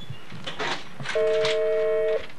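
Multi-line office desk telephone giving one electronic ring, about a second long, starting about a second in, after a few light knocks.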